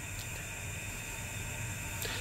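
Steady, faint hiss of background air noise while the automatic test panel machine pauses in its dwell between painting strokes, the spray gun off.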